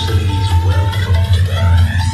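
Electronic dance music played loud through a Panasonic AK67 mini hi-fi system with its bass turned to maximum: a heavy, steady bass line under a repeating synth note, with a rising synth sweep building through the second half.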